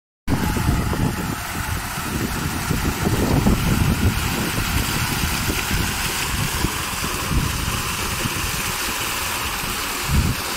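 Garden fountain jets and a stone water wall splashing steadily into a tiled basin, with wind gusting on the microphone as an uneven low rumble.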